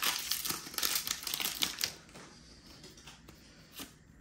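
Foil wrapper of a Pokémon booster pack crinkling and tearing as it is opened by hand: a run of crackles for about two seconds, then only faint handling sounds.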